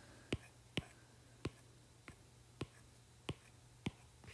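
About six faint, sharp ticks at uneven intervals: a stylus tip tapping on an iPad Pro's glass screen as drawing strokes begin and end.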